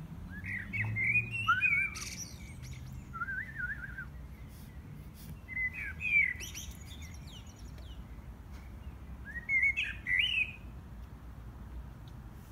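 A songbird sings in four short phrases of quick, sweeping, whistled chirps: one near the start, one about three seconds in, one around six seconds and one near the end.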